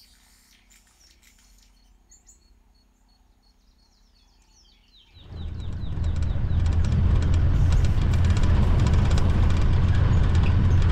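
Near quiet with a few faint birds chirping, then about five seconds in the steady low rumble of an open game-drive vehicle driving along a dirt track comes in suddenly and stays loud.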